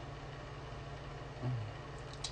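Steady low hum of room tone, with a brief low murmur about one and a half seconds in.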